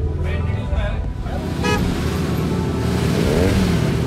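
Road traffic over background music: a vehicle horn toots briefly about one and a half seconds in, and near the end passing engines sweep up and down in pitch.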